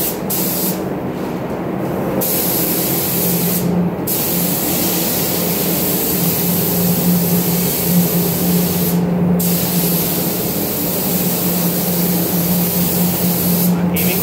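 Compressed-air gravity-feed spray gun hissing as it sprays primer, stopping briefly three times between passes. A steady low hum runs underneath.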